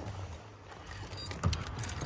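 Keys jangling with a few metallic clicks and a thump about a second in: the ignition key being put in and turned to start the truck.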